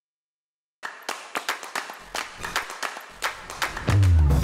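Silence for most of a second, then the show's intro music starts with rhythmic hand claps; a bass line comes in about two seconds in.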